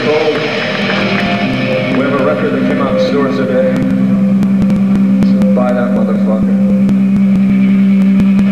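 A live rock band's amplifiers holding a sustained low droning note between songs, with voices calling out over it now and then.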